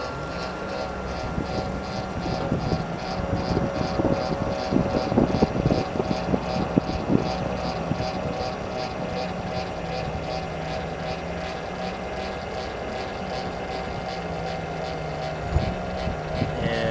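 Electric tongue jack on a travel trailer running as it retracts: a steady motor and gear whine with an even ticking about three times a second, and a few clunks in the first half.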